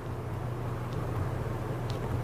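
A steady low hum with faint background noise and a couple of faint ticks.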